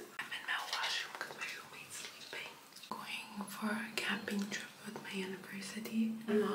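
A woman whispering, then speaking softly in a low, flat voice about halfway through.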